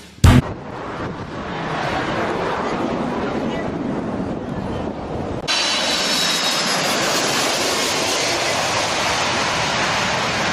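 Boeing 747 jet engines running loud and steady as the jumbo passes close, a rushing rumble with no clear pitch. About halfway through, the sound cuts abruptly to another, brighter recording of jet noise.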